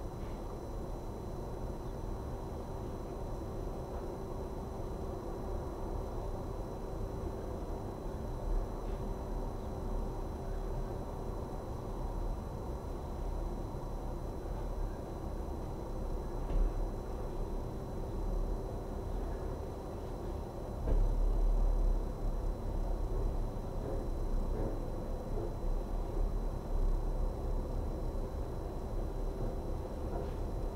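Steady low rumble with a faint steady hum, a few soft knocks, and a louder surge of rumble about two-thirds of the way through.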